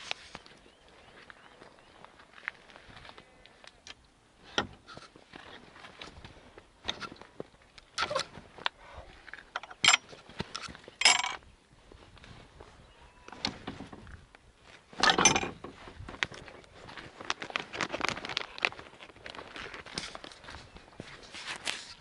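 A walker's footsteps on a stony track, with irregular knocks and rustles, the loudest a few seconds apart in the middle stretch.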